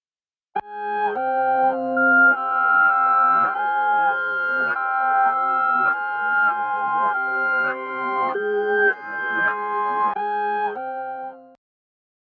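Reversed and chopped piano sample loop, pitched up, playing back: held chords changing every second or so, starting about half a second in and cutting off just before the end.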